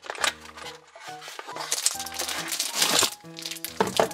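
Plastic shrink-wrap crinkling and rustling in quick bursts as a wrapped stack of plastic dominoes is slid out of a cardboard box, over light background music.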